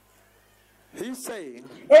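Speech only: a short near-silent pause, then a voice with a rising and falling pitch from about a second in, running into louder speech near the end.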